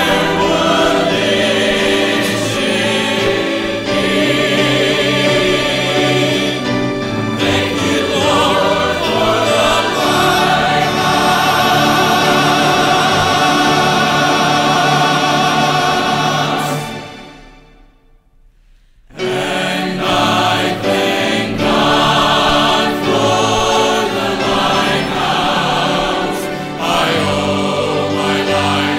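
Choir singing a gospel song in full, sustained chords with vibrato. About two-thirds of the way through, the sound dies away into a hush of a couple of seconds, then the choir comes back in.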